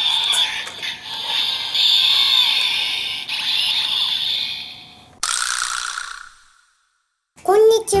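Kamen Rider Build toy transformation belt (Build Driver) playing its Rabbit Tank transformation sound effects: a hissing, sparkling electronic sound with a steady high tone for about five seconds, then a short burst that fades out about a second later.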